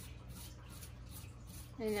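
Toothbrush scrubbing the wet, grimy metal fins of a window air conditioner's indoor coil: faint scratchy strokes over a low steady hum.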